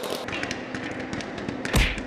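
Scattered light taps and clicks, with one heavy thump near the end.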